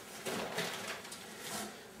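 Faint rustling of packing paper and cardboard as a paper-wrapped glass vase is set upright into a packing carton.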